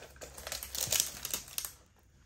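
Clear plastic cover film on a diamond painting canvas crinkling and rustling as the canvas is handled and shifted, with irregular crackles that are loudest about a second in.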